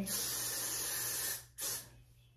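Aerosol can of Got2b Glued freeze hairspray being sprayed onto hair: one long hiss of about a second and a half, then a short second burst near the end.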